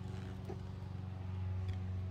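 A motor running in the background with a steady low hum.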